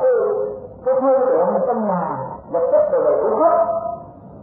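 Drawn-out singing in long melodic phrases, broken by two short pauses, about a second in and about two and a half seconds in.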